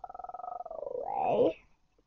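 A child's voice making a drawn-out, rattling growl-like vocal sound, its pitch bending up and then sliding down before it stops about one and a half seconds in.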